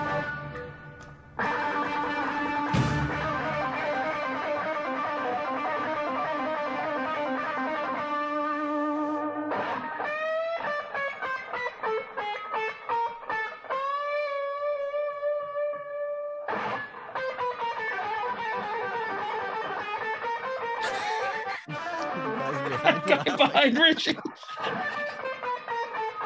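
Live recording of a Gibson ES-335 hollow-body electric guitar with an orchestra: after a held ensemble chord, the guitar plays long sustained notes with vibrato, then breaks into a fast, busier solo.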